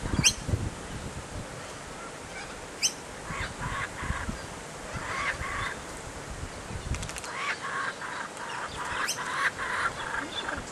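Young laughing kookaburra giving harsh, raspy begging calls in short repeated bursts while being fed, coming faster near the end.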